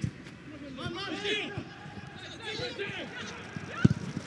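Footballers shouting calls to one another in an empty stadium, then near the end a single sharp thud of the ball being struck hard in a shot from distance.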